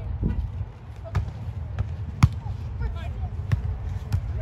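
Beach volleyball rally: four sharp slaps of hands and forearms striking the ball, about a second in, near two seconds, loudest just after two seconds, and again at three and a half seconds, over a steady low rumble.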